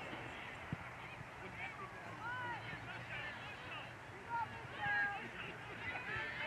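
Faint, distant voices of players and onlookers calling across an open football field, with one short thump about a second in.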